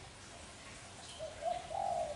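Spotted dove cooing: one short low coo phrase beginning a little past a second in.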